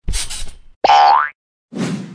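Cartoon sound effects for an animated logo: a short noisy burst, then a springy boing that rises in pitch about a second in, then another noisy burst near the end.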